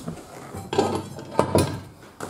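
Recessed floor-mount wheel chock being flipped up out of its pocket in a trailer floor: a few metallic clanks and rattles, the sharpest about one and a half seconds in.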